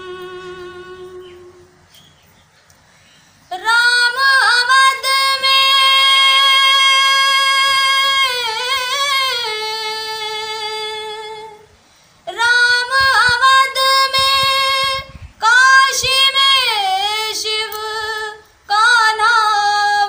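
A woman singing a Hindi devotional song solo, in long held phrases that bend and waver in pitch, with short breaths between phrases. There is a quiet pause of about two seconds just after the start, before the first long phrase.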